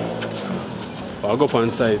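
A man's voice speaking briefly, over general background noise, with a steady low hum dying away at the start.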